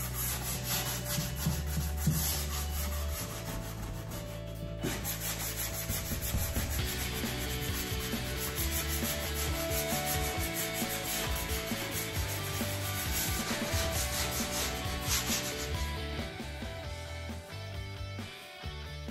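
Hand sanding block rubbing back and forth over the painted wood of a hutch: a light sand over dried paint and stencil, a steady run of rasping strokes that stops about two seconds before the end.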